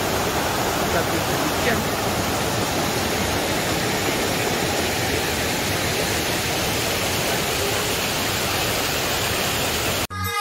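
Steady rush of river water pouring over rocks in shallow rapids close by, with a small waterfall.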